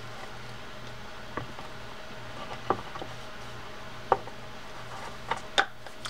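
A handful of light, sharp clicks and taps from a Shimano TLD 10 lever drag reel as its side plate is seated on the frame and the spool is turned to mesh the gears, over a steady low hum.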